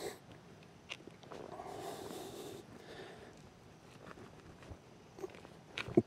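Faint scraping and crunching of a wooden digging stick being pushed and worked into the soil to bore a vent hole, with a few small clicks.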